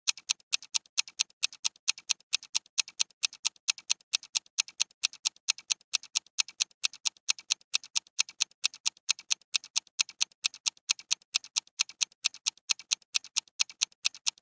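Clock-ticking sound effect marking a countdown timer: sharp, high clicks evenly spaced at about four to five a second.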